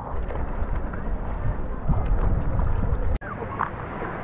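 Wind buffeting the microphone over lapping lake water, with a fluttering low rumble. It breaks off abruptly about three seconds in, leaving quieter water sounds.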